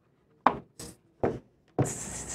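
A cardboard doll box being handled on a tabletop: three light knocks about half a second apart, then a rustling scrape near the end as the box is slid out of its outer packaging.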